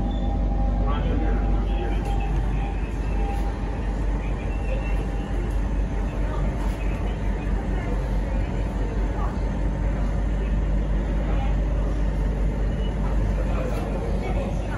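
Interior running noise of a Siemens C651 metro train as it slows into a station: a steady low rumble with a faint motor hum, under background passenger voices.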